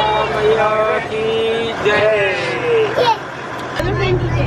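Voices of bus passengers with long held, sliding notes, as in singing, over the steady low drone of the moving bus.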